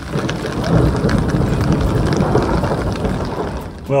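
A loud, long rumble of thunder that swells within the first second, holds, and eases off near the end.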